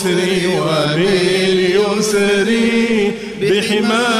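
Arabic devotional chanting (hamd o sana, praise of God): a sung melody with long held, wavering notes, dipping briefly a little after three seconds in.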